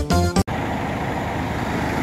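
Music cuts off abruptly about half a second in and gives way to a steady low vehicle rumble.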